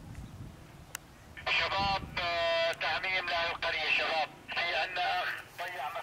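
A person's voice talking loudly from about a second and a half in, the words not made out, after a single sharp click.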